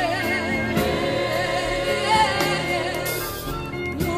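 High school gospel choir singing.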